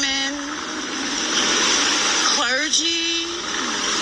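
A woman's slow, emotional speech, a few long drawn-out syllables with pauses between them, over a steady rushing background noise.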